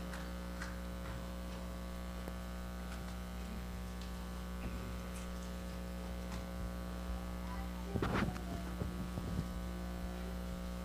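Steady low electrical mains hum in the audio feed, with faint scattered clicks and a short louder burst of noise about eight seconds in.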